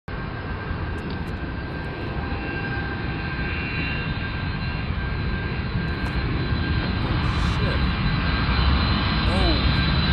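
Jet airliner's engines: a deep rumble with a steady high whine, growing gradually louder as the plane comes closer.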